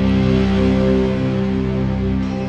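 PRS SE 24 electric guitar played through a fuzz pedal into two amps with heavy reverb and delay: sustained, droning notes that wash into one another, with a new chord struck right at the start.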